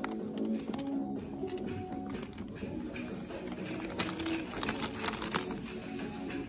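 Background music, with plastic flower sleeves crinkling as they are brushed: a scattered crackle of clicks from about a second in until past five seconds, the sharpest one at about four seconds.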